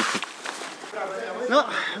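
Mostly speech: a man's voice drawing out a single word from about a second in, over a faint outdoor background hiss.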